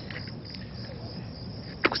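Crickets chirping steadily in a night-time background ambience, over a low steady hum.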